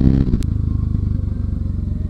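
Motorcycle engine running steadily with a fast, even pulse while riding at low speed, with one sharp click about half a second in.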